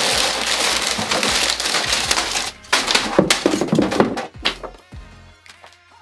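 Crumpled brown packing paper rustling and crackling as hands dig through it in a cardboard box. It is continuous for about two and a half seconds, then comes in shorter bursts and dies down near the end.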